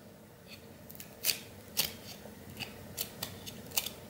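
A stack of cardboard trading cards being thumbed through by hand: light, irregular clicks and snaps as the cards slide off one another, about seven in a few seconds.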